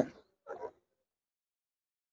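Near silence: the sound drops out almost entirely, broken only by one faint, short sound about half a second in.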